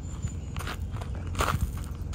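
Footsteps crunching on gravel, a few irregular steps.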